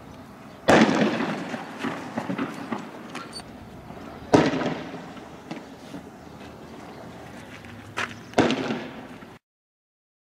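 Loud bangs of tear gas rounds being fired, four in all: one about a second in, one near the middle, and two close together near the end, each with a trailing echo. The sound cuts off suddenly just before the end.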